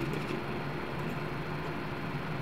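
Steady background hiss with a faint low hum: room noise, with no distinct event.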